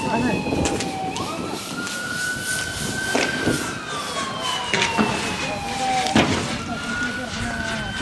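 Police vehicle siren on a slow wail: it rises quickly about a second in, falls slowly for about five seconds and rises again about six seconds in. Several sharp bangs cut across it, two close pairs near the middle and a loud one as the siren climbs again.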